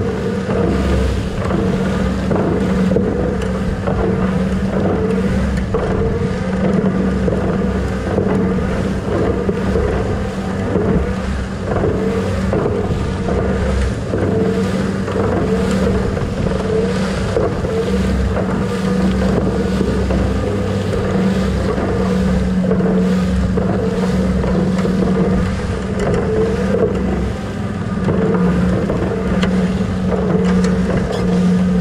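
Tractor engine and a tow-behind lime spreader running steadily while spreading lime, a constant drone at one even pitch.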